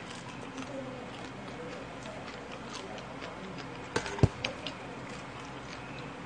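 Eating with chopsticks and a metal spoon from a stainless steel bowl of rice: small clicks and scrapes of the utensils against the bowl, with a cluster of sharper clinks and one louder knock about four seconds in.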